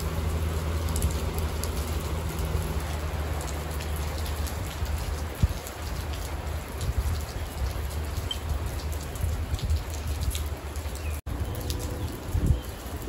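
Steady rain falling, with scattered drops ticking close by and a low steady rumble underneath.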